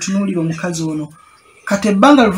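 Only speech: a man talking, with a short pause a little past the middle before he goes on.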